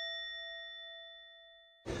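A chime sound effect ringing out: one struck, bell-like tone with overtones, fading steadily and cut off sharply near the end.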